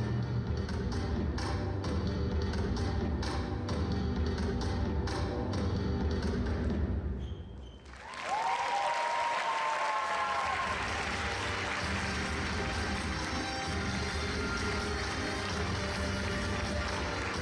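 Ballroom show-dance music with a steady beat, fading out about seven seconds in. Audience applause then breaks out with a couple of gliding whistles, and music comes back underneath it.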